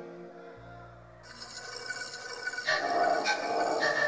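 A live band's electronic keyboard holding sustained notes between songs as they fade out. A low held tone comes in, then a noisy wash joins about a second in and grows louder from the middle on.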